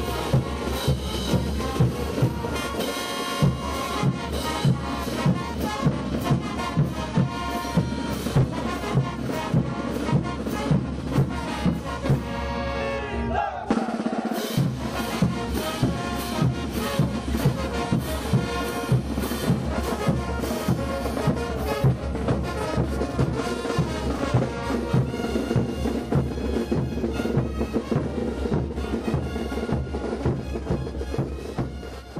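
Brass band playing morenada music: brass over a steady, heavy beat of bass drums and snare drums, about one and a half beats a second. The bass drums drop out briefly about halfway through.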